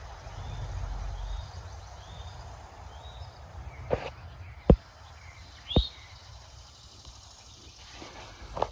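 Rural outdoor ambience: a few faint bird chirps and a steady high-pitched insect buzz, with a low rumble of wind or handling on the microphone in the first second or so. Near the middle come three short sharp clicks or taps, the loudest a little before halfway through.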